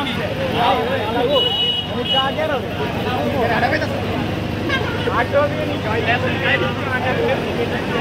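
Many overlapping voices of a crowd over the steady running of a JCB backhoe loader's diesel engine, with a brief high steady tone about a second and a half in.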